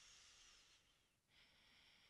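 Near silence with faint breathing: one soft breath lasting about a second, a brief pause, then another breath beginning a little over a second in.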